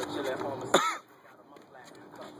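Voices, then about three-quarters of a second in a short, loud vocal shout that falls in pitch, after which it goes much quieter.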